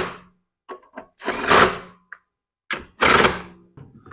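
Power drill with a socket bit driving in the recoil starter bolts on a Honda GCV160 mower engine, in three short bursts about a second and a half apart.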